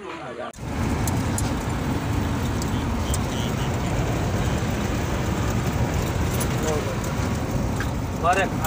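Steady road and engine noise of a car heard from inside its cabin while driving, starting abruptly about half a second in. Voices are heard briefly before it and again near the end.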